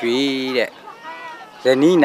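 A man's voice speaking in the open air: one drawn-out phrase, a short pause, then another phrase beginning near the end.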